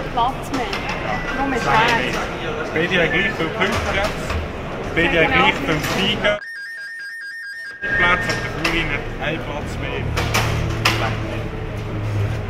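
People talking in a garage, several voices back and forth. About halfway the voices cut out suddenly for over a second, leaving only a thin steady tone before the talk resumes.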